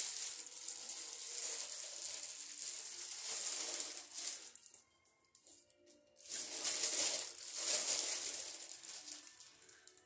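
Packaging rustling and crinkling as items are handled and unpacked, in two bouts of a few seconds each with a short pause between.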